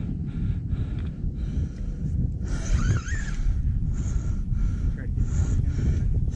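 Wind buffeting the microphone, a steady low rumble, with a brief faint voice about three seconds in.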